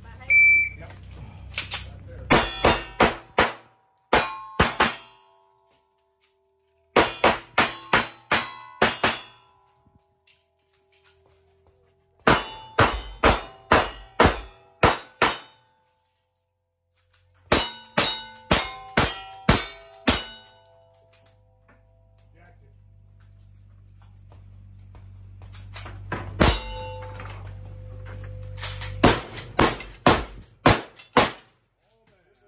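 Electronic shot-timer beep, then rapid gunshots fired in strings of about five to seven shots a few seconds apart, with hit steel targets ringing after the shots. A last string near the end opens with a heavier blast.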